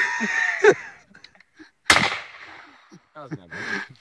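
A single gunshot about two seconds in, a sharp crack with a short echoing tail, with a man's voices and laughter before and after it.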